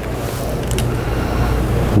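Steady low rumble with a faint hiss over it: room background noise.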